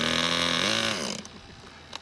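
Handheld electric starter spinning a model aircraft glow engine for about a second, its pitch dipping briefly under load before it stops. The engine does not fire: its glow plug is broken.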